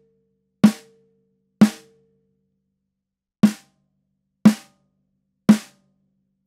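Snare drum with gel muffling on its batter head, struck with a stick five times about a second apart, in two groups. The first two hits leave a prominent higher overtone ringing. In the last three, with the Evans EQ Pod pieces moved asymmetrically toward one side of the head, that overtone is damped and each hit dies away shorter.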